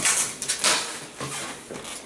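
Latex modelling balloons being handled and twisted on a table: a run of short rubbing and rustling sounds that fade toward the end.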